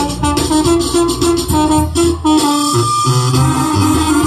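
Live Mexican banda music: a brass band playing a dance tune over a steady, repeating bass line.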